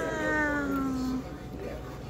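A woman's drawn-out exclamation of delight, one long vowel gliding gently down in pitch and fading out about a second in.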